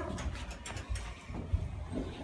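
Thyssenkrupp elevator in operation: a steady low rumble with a series of mechanical clicks and knocks, the sharpest about a second and a half in.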